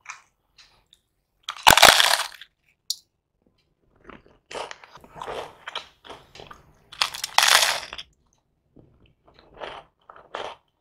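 Close-up crunching of a crisp deep-fried snack being bitten and chewed. There are two loud crunches, about two seconds in and again around seven seconds, with lighter crunching chews between them.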